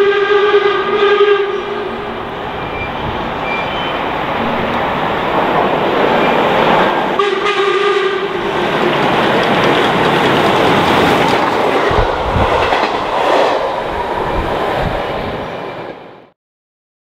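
LMS Black 5 steam locomotive's deep whistle sounding, held until about a second and a half in and sounded again briefly about seven seconds in, then the loud rush of the steam train passing at speed, with wheel beats near the end before the sound cuts off.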